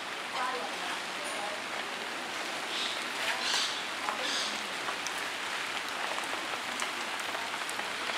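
A steady, even hiss like rain falling, with faint voices now and then and a few soft clicks.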